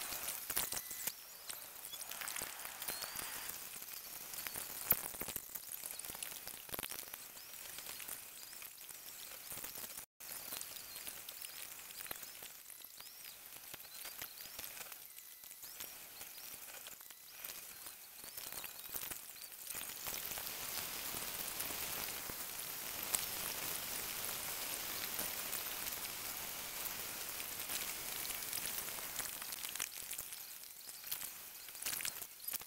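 Steady crackling hiss, mostly high-pitched, with scattered clicks and a brief dropout about ten seconds in.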